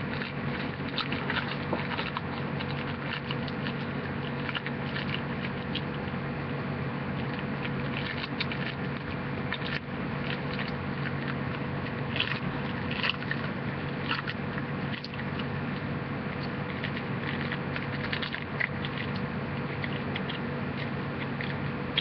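A wrapper being handled close to the microphone, crinkling and crackling irregularly throughout, over a steady low hum.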